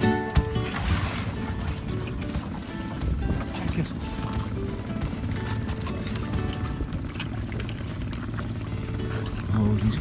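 Faint music and indistinct talk over a steady low rumble of wind and boat, with scattered small clicks and knocks as a crab pot and its catch of Dungeness crabs are handled on an aluminium boat deck.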